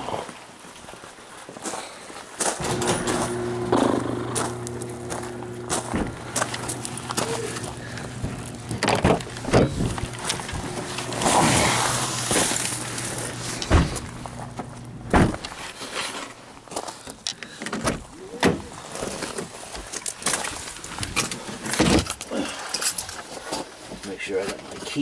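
Footsteps on gravel and the knocks and clicks of a person climbing into a car, with a steady low hum running from a few seconds in. The hum cuts off about fifteen seconds in with a sharp knock, like a car door shutting, and scattered clicks and handling noises follow.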